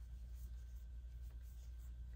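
Faint scratching and rustling of yarn drawn over an aluminium crochet hook as stitches are worked, over a low steady hum.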